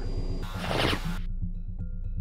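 Film soundtrack: under a low music drone, a brief whoosh falls in pitch about half a second in as air-launched Maverick missiles are fired. The sound turns muffled for the last second.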